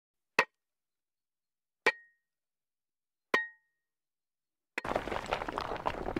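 Three sharp clanks about a second and a half apart, each with a brief ring, then a dense rush of noise from about five seconds in.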